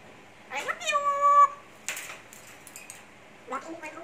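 African grey parrot giving a drawn-out call, rising and then holding a steady note, about half a second in. A sharp click follows, and a shorter rising call comes near the end.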